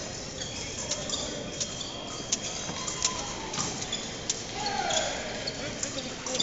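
Épée fencing bout in a gymnasium: many short, sharp clicks and taps from blades touching and from the fencers' feet tapping and stamping on the hardwood floor. They come irregularly over a murmur of voices echoing in the large hall.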